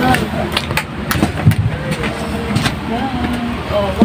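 Steady low rumble of a vehicle heard from inside the cabin, with frequent small knocks and rattles, and people talking in the background.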